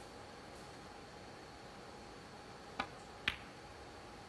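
Snooker shot: the cue tip strikes the cue ball, then about half a second later the cue ball clacks into a red, the louder of the two clicks. Both come late in a hushed arena with a faint steady hum.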